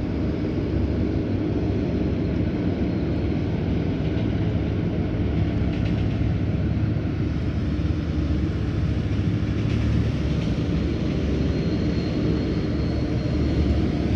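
Diesel engine of a tracked excavator running steadily: a loud, continuous low drone with a constant pitch.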